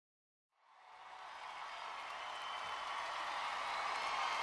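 Silence, then crowd cheering and applause fading in about half a second in and growing steadily louder, the lead-in to a song on the soundtrack.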